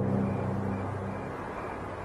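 Dramatic background score: the low ringing of deep drum strikes fading away slowly, with no new strike.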